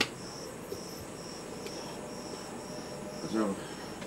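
Crickets chirping in a steady, even rhythm, about three chirps a second.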